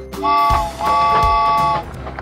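Cartoon steam-train whistle sounding twice, a short toot and then a longer one that sags slightly as it ends, over children's background music with a steady beat.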